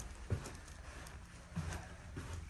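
Footsteps on a hard floor: two dull steps about a second and a quarter apart, over a steady low hum.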